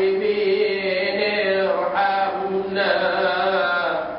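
A man's voice chanting Quranic Arabic in the drawn-out melodic recitation style, holding long notes that bend up and down, with brief breaths about two and three seconds in.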